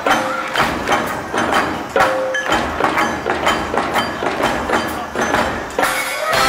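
Live dance music in a percussion-led passage: an even beat of sharp knocks, about two or three a second, under a few scattered pitched notes, with the brass coming back in at the very end.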